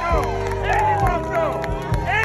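Saxophone playing bending, sliding melodic phrases over a backing track with a steady bass line and drum beat, with crowd noise around it.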